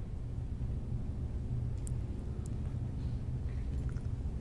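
A film scene's soundtrack with the music stripped out, played back: only a low, steady rumble of ambience, with a few faint ticks about two seconds in.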